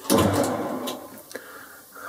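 Boxford lathe running with its chuck and gear train turning, loudest at the start and dying away over about a second as the lathe comes to a stop between screw-cutting passes.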